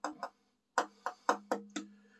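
The last of a beer pouring from an upturned can into a glass: a run of short glugging pulses, about four a second, over a faint steady low hum in the second half.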